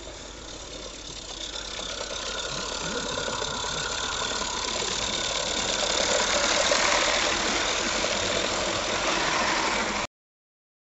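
Live-steam garden-railway model locomotive hauling coaches, its running sound growing steadily louder as it approaches and is loudest about six to seven seconds in.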